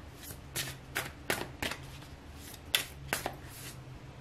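Tarot cards being shuffled by hand: about ten crisp card snaps and flicks, irregularly spaced, as the next card is drawn from the deck.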